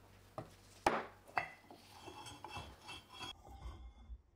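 Rusty steel gears from an old lifting jack knocked and set down on a wooden workbench by hand: three sharp clinks in the first second and a half, then metal scraping and rattling on the wood that stops shortly before the end.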